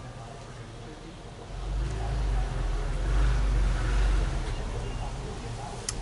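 A road vehicle passing by: a low rumble that swells about a second and a half in, peaks midway and fades toward the end.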